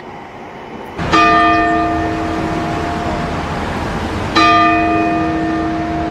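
The Sapporo Clock Tower's bell striking twice, about three seconds apart, each stroke ringing on and fading slowly.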